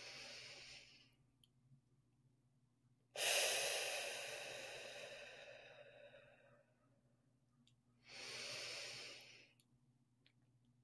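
A woman taking slow, deep breaths close to a microphone, as a guided breathing exercise. One breath ends about a second in, a longer and louder one starts about three seconds in and fades away over about three seconds, and another comes about eight seconds in.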